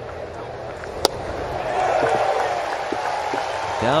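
A baseball pitch pops sharply into the catcher's mitt once, about a second in, for strike three. Stadium crowd noise then swells into cheering.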